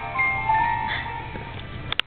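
A toy's electronic 'try me' sound chip playing a simple tune of thin, steady electronic notes one after another, cut off by a click at the very end.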